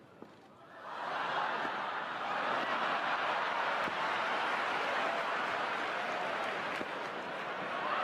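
Tennis crowd applauding and cheering in reaction to a trick shot, starting about a second in and holding steady.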